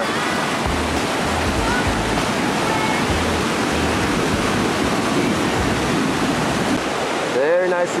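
Whitewater rapid rushing, a dense steady roar of churning water. Under it runs the deep repeating bass beat of a rap backing track, which fades out about six seconds in.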